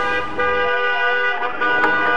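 Electronic dance music in a breakdown: the bass and beat drop out under a sustained, horn-like synth chord, and drum hits come back near the end.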